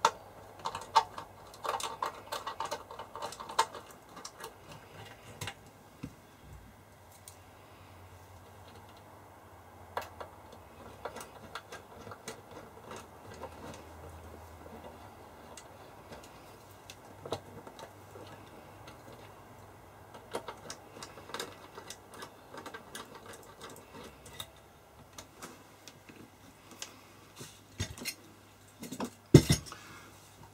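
Irregular small metallic clicks, taps and scrapes as screws are fitted to hold an instrument's front panel in its metal case, busiest in the first few seconds and sparser after, with a sharper knock just before the end.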